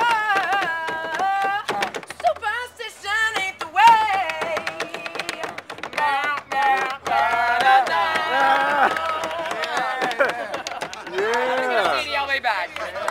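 Live music: a melodic line of held notes that slide and bend in pitch, running on with short breaks between phrases.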